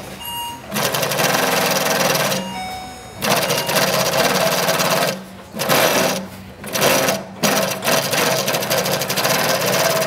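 Feed-off-the-arm double chain stitch industrial sewing machine running at speed and stitching a twin seam through fabric, in runs broken by several short stops.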